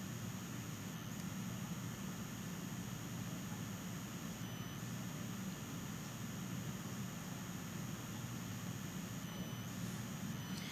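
Steady low hum and hiss of background room tone, with no distinct sounds.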